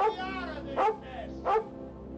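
Collie barking sharply, three barks about three-quarters of a second apart, over background film music with held notes.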